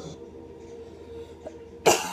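A person with a cold coughs sharply near the end, the first of a coughing fit. Before it, a low steady hum of held tones comes from the spirit box software playing on the laptop.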